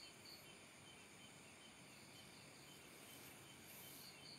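Near silence with faint crickets chirping, a regular high chirp about twice a second over a soft background hiss.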